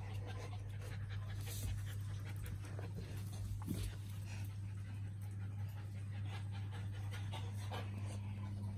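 A dog panting, over a steady low hum.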